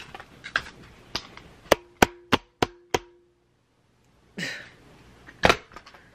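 A run of five quick sharp knocks, about three a second, with a faint ringing tone beneath them, among a few softer clicks and handling bumps.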